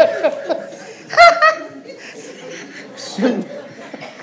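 A few people laughing and chuckling, with a loud burst of laughter about a second in and another, quieter, about three seconds in.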